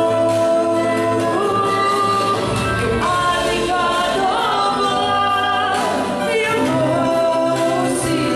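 A group of women and a man singing a Christian worship song together into microphones, holding long notes over instrumental accompaniment.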